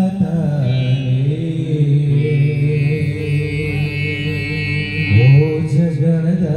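Live band accompanying a Kannada Christian devotional song: a keyboard holds steady notes over a hand-drum beat between sung lines. The male singer's voice comes back in about five seconds in.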